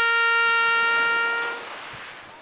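Marching-band trumpets holding one long, steady note that ends about one and a half seconds in.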